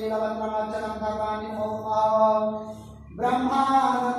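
Sanskrit mantras recited in a drawn-out chant on a steady held pitch, with a short pause for breath about three seconds in.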